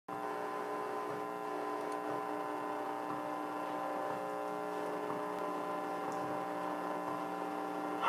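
Steady electrical hum: a constant buzz made of several steady tones, with no change in pitch or level.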